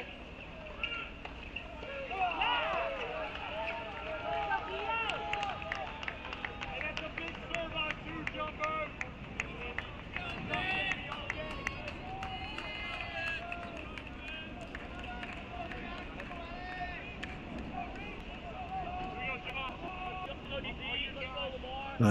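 Live court sound at an outdoor college tennis match: distant voices of players and people around the courts, with scattered sharp clicks of ball strikes and footwork.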